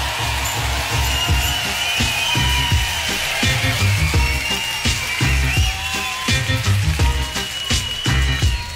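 Live rock band playing on a festival stage: a steady beat of heavy bass and drums, with held, bending notes above it.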